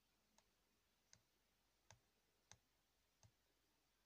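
Five faint clicks, under a second apart, from the tremolo pedal's wave edit knob, a push-and-turn rotary encoder, being turned from one detent to the next to step through the edit parameters.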